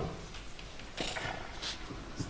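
A pause between spoken lines: low steady hum and faint room noise, with a short soft noise about a second in.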